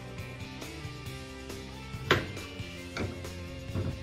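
Background music with steady held tones, over which a knife cuts through a green plantain and knocks once sharply on the cutting board about two seconds in, with lighter knocks near the end.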